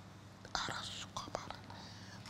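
A woman breathing and whispering under her breath close to a lapel microphone, with a strong hiss from about half a second in and a couple of short mouth clicks, over a low steady hum.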